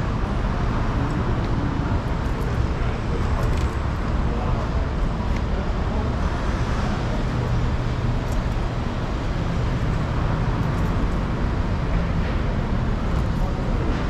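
Street traffic noise: a steady low rumble of vehicle engines and passing traffic, with no single event standing out.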